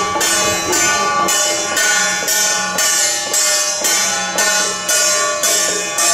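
Temple procession music: metal percussion such as cymbals struck in an even beat about twice a second, each stroke ringing briefly, over a sustained melodic line.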